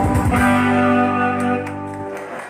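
Yamaha electronic keyboard playing live with a guitar-like voice over a beat, settling into a long held closing note that fades near the end.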